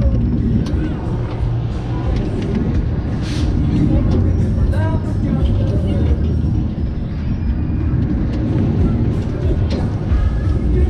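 Heavy, buffeting wind rumble on the microphone of a rider's camera as the Superbowl flat ride swings and spins, with fairground music and riders' voices shouting over it.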